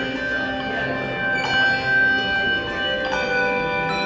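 Handbell choir ringing sustained chords, a new chord struck about every one and a half seconds and each left ringing on.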